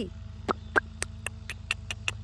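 A person clicking their tongue to call a pony, a quick string of sharp clicks, about four a second.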